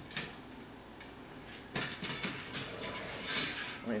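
Metal hardware clicking and scraping as bolts and backing plates are slid into the channel of an aluminium roof-rack crossbar. The first second and a half is quiet; after that come several short, sharp clinks and scrapes.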